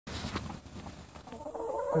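A flock of brown laying hens clucking and calling. The calls become clearer and denser about a second and a half in.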